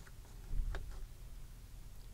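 Faint handling sounds of a clear stamp being shifted on paper in a stamping platform: a couple of soft ticks, the clearest a little under a second in, over quiet room tone.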